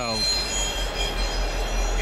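Freight train moving away out of sight: a steady low rumble with thin, steady high wheel squeal over it.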